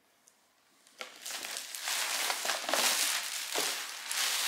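Plastic shopping bag crinkling and rustling as it is handled and dug through. It starts suddenly about a second in, after a moment of near silence.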